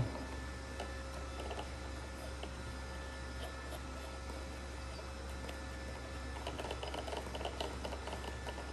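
Faint small plastic clicks and scrapes as a 3D-printed plastic cap is screwed by hand onto a Kobalt string trimmer head, with quicker clicking near the end, over a steady low hum.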